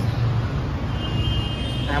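Steady low rumble of road traffic, with a faint thin high tone about a second in.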